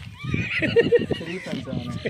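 Men laughing in short repeated bursts, with no words.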